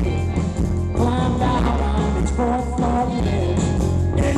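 Live band playing a song: a man sings the lead over strummed archtop acoustic guitar and banjo, with steady bass notes underneath.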